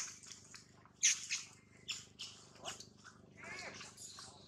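Dry leaf litter crackling irregularly under a walking macaque's feet, the loudest crunch about a second in. A short arching squeak about three and a half seconds in is typical of a young macaque's call.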